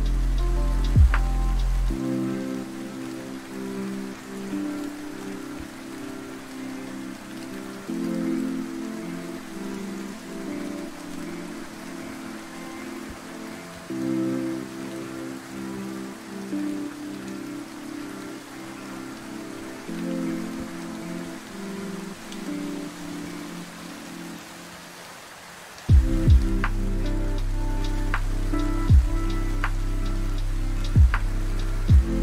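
Lo-fi hip hop music laid over a steady rain-on-surfaces sound bed. About two seconds in, the deep bass and drums drop out, leaving soft chords that change about every six seconds over the rain. The bass and drums come back near the end.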